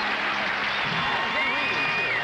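Studio audience applauding, with voices calling out over the clapping.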